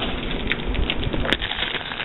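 Cellophane bags of wax tarts crinkling and rustling as a hand rummages among them and lifts one out, with one sharp click about two-thirds of the way in.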